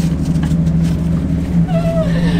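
Steady low machine hum, with faint rustling as greasy winch parts are wiped down with paper towel. Near the end comes a short tone that slides downward.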